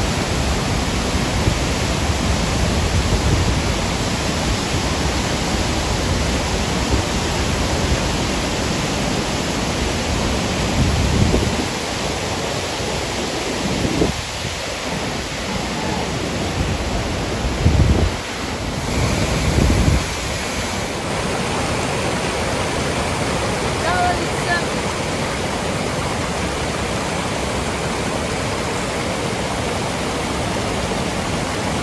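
Låtefossen waterfall and the white-water rapids below it, a steady rushing of falling and churning water. A few gusts of wind buffet the microphone around the middle.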